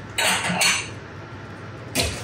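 A plate being fetched and handled: a short clatter of dishes lasting about half a second, then a sharp click near the end.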